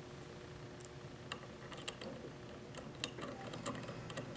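Faint, scattered small metallic clicks and ticks, more of them in the second half: small machine screws and a hex key being handled against the metal motor-mount flange while the screws are started by hand.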